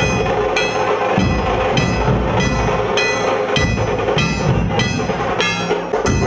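Procession percussion: a large drum beating under metallic strikes that ring at a steady beat, roughly one and a half strikes a second.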